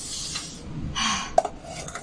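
Aluminium pot being handled and scooped from over a plate: two short scrapes and a single sharp metal clink just after halfway.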